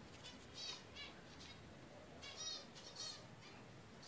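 Zebra finch chirping faintly: a handful of short, high calls in two clusters, the first in the opening second and the second between about two and three seconds in.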